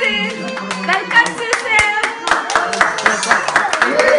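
A group of people clapping, the claps coming thick and fast from about halfway through, with voices mixed in.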